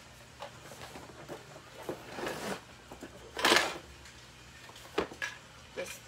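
Hard plastic and metal spray-mop handle sections being handled and knocked together while the mop is fitted together: scattered clicks and knocks, with a louder, longer scrape a little past halfway through.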